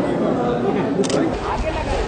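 Chatter of several voices around a group posing for photographs, with a sharp camera shutter click about halfway through.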